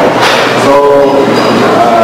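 Background music with a slow melody of long, held notes, steady and loud.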